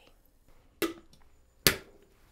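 Two sharp knocks about a second apart, the second louder: hard kitchen items being handled and set down on the counter while the blender is readied. The first knock rings briefly.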